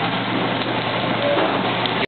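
Steady hiss of food sizzling on a teppanyaki griddle, over a low steady hum.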